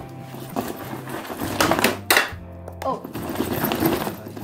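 School backpack being shaken out, with its contents rattling and clattering and a few louder knocks about two seconds in, over background music.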